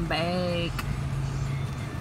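A brief pitched vocal sound in the first moment, then low steady car-cabin rumble.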